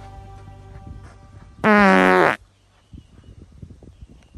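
A loud fart sound, one buzzing blast of under a second with its pitch sagging slightly, about a second and a half in, as background music fades out.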